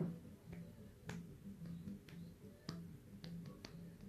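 Faint, sharp clicks and taps, about six of them at uneven spacing, over a quiet low hum that pulses evenly.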